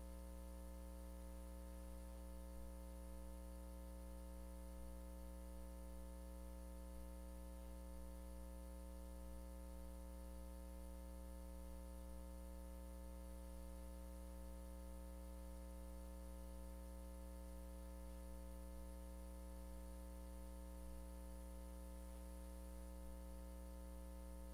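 Faint, steady electrical mains hum with a low buzz and light hiss, unchanging throughout.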